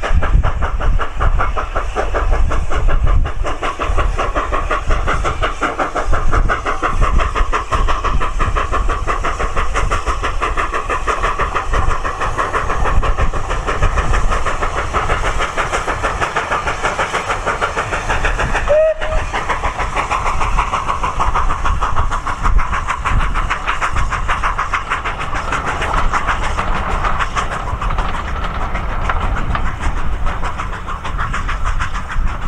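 Saddle-tank steam locomotive working a passenger train, its exhaust beating in a quick, even rhythm over a low rumble of the train on the rails.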